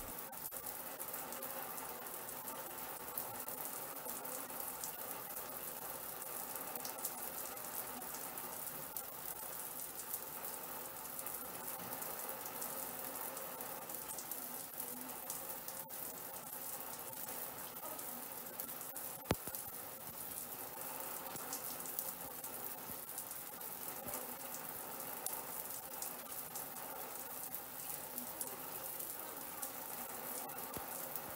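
Water spraying steadily from a Mira Advance ATL electric shower's head and spattering into the shower, the unit running at its maximum temperature setting as a stage of commissioning. A single sharp click about nineteen seconds in.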